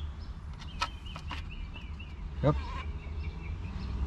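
A few sharp clicks of plastic and metal steering-wheel parts being handled, about a second in, over a steady low rumble, with birds chirping faintly in the background.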